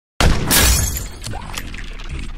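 Glass-shattering sound effect with a deep bass boom, starting suddenly a moment in and fading over about a second.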